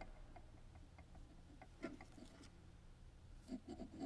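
Near silence over a low steady room hum, with faint clicks and rustles of a chalice and cloth being handled at the altar, one cluster about two seconds in and another near the end.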